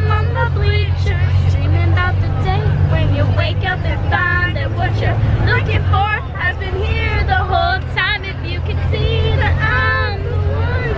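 Girls' voices singing and chattering over the steady low rumble of a moving school bus.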